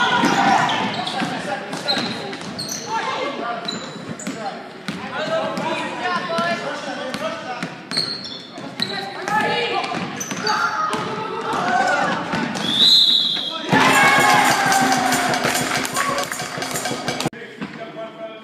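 A basketball game in a school gym: players and spectators shouting, with a ball bouncing on the hardwood court, echoing in the hall. The sound jumps louder about 14 s in and drops off suddenly a little before the end.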